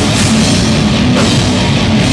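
Metalcore band playing live and loud: distorted electric guitars and bass over rapid drumming, with cymbals washing over the top.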